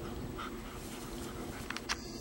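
Two dogs, a young Airedale terrier and a larger brown dog, play-wrestling, with a few short soft vocal sounds in the first second. A couple of sharp clicks come near the end.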